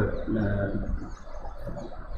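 A man's drawn-out hesitation sound, a held 'uh', that fades out just under a second in, leaving quiet room tone.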